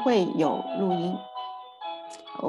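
A woman speaking briefly over background music of steady held tones. Her voice stops a little past halfway while the held tones carry on.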